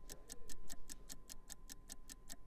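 Countdown clock ticking sound effect: quick, even ticks, several a second, marking the final minute before a live auction closes.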